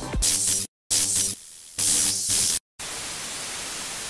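Intro music breaking up in glitchy stutters with two brief dead-silent dropouts, then a steady hiss of TV static for the last second or so.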